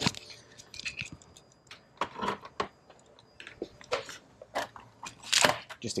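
Battery charger's jump-lead clamps being unclipped and their leads handled: scattered clicks and rattles, with a louder clatter just before the end.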